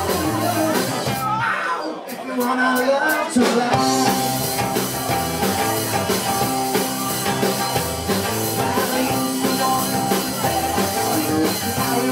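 Live 1960s-style rock and roll band playing: violin-shaped bass, hollow-body electric guitars and drum kit, with singing. About a second in, the bass drops out for a couple of seconds while a few sharp drum hits sound. At about three and a half seconds the full band comes back in.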